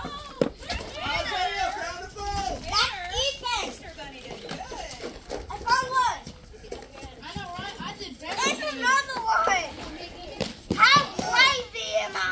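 Several children calling out and chattering at play, high voices overlapping in short bursts that grow louder about three, six, nine and eleven seconds in.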